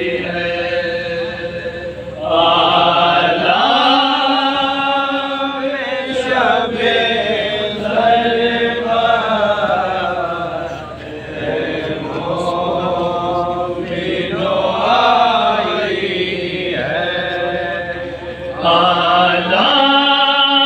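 A man chanting a noha, a Shia mourning lament, in long melodic phrases with brief breaths between them.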